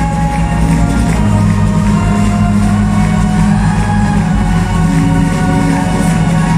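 Live pop band playing loudly through a PA, with keyboard, bass and drums; deep sustained bass notes change about a second in and again past four seconds.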